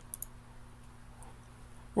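A few light computer mouse clicks just at the start, over a faint steady electrical hum.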